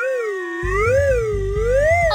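A wavering, siren-like comedy sound effect: one tone that glides smoothly up and down about once a second, over background music whose low beat comes in about half a second in.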